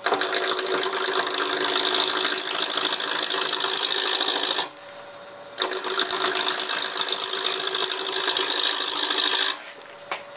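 A turning gouge cutting a spinning glued-up walnut blank on a Laguna Revo 1836 wood lathe, rounding it and working it toward shape. There are two long cuts, with a break of about a second midway where only the lathe's steady whine is heard.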